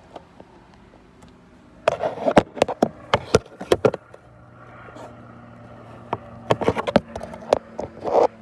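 Handling noise from a phone and a cardboard box being moved about: bursts of sharp clicks, knocks and rubbing, about two seconds in and again near the end, over a faint steady low hum.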